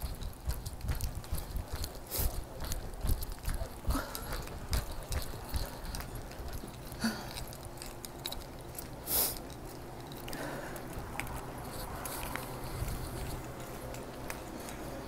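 Footsteps and the rubbing and knocking of a handheld phone being carried while walking, with irregular low thumps and clicks through the first half. A steady low hum comes in during the second half.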